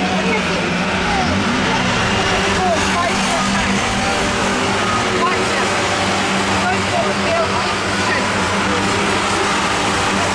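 Several Ministox stock cars (Mini-based race cars) running around a short oval, their engines a steady, continuous drone. Background voices are mixed in.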